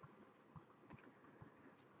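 Faint scratching of a pen writing on a paper card, in short light strokes.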